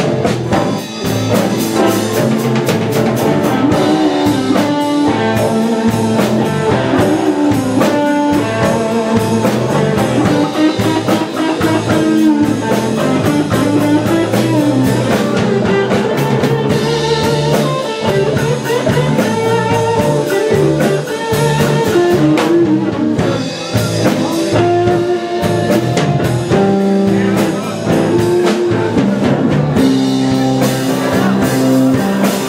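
A live band playing continuously: guitars with upright double bass and a drum kit.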